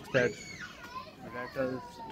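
Children's voices in a shop: a young child's high-pitched call, rising then falling, lasting about half a second, with other voices briefly behind it.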